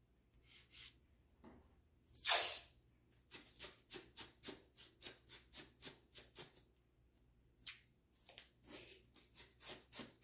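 Masking tape being handled: one longer tearing rip about two seconds in, then a quick run of short crisp strokes, about four a second, for several seconds, and a few more near the end.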